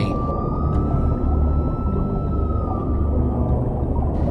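Underwater ambient sound from the camera: a dense low rumble with one steady high whine that rises slightly in pitch and fades out about three and a half seconds in.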